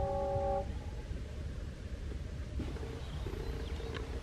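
A train's horn sounding a steady chord of several tones, cutting off about half a second in, over a steady low rumble.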